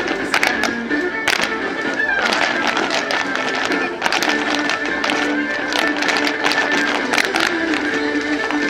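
Irish dance music playing steadily for a line of step dancers, with sharp taps of their shoes striking the pavement scattered through it.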